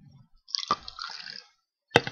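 Tequila poured from a glass bottle into a shot glass: about a second of pouring, followed by one sharp click near the end.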